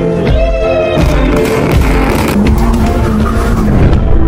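Loud background music.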